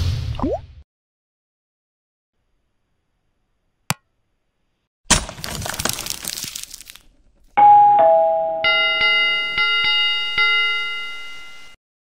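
Animated subscribe-outro sound effects: a brief sound dying away, a single sharp click, then a noisy crash lasting about two seconds as the graphic shatters. From about eight seconds in a notification bell chimes in a run of repeated strikes, then cuts off.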